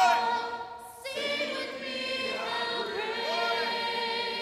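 Church choir singing together in harmony; one phrase fades out about a second in, and the next starts with a long held chord.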